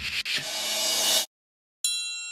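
Logo-sting sound effects: a swelling hiss-like whoosh with faint tones in it builds for about a second and cuts off suddenly. After a short silence, a bright metallic ding strikes near the end and rings on.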